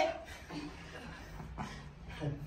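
Faint, brief voice sounds in a quiet room over a low steady hum, just after a loud shout cuts off at the start.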